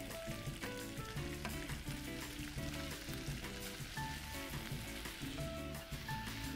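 Adobo chicken feet sizzling in a frying pan, a steady crackling hiss, under soft background music with held notes.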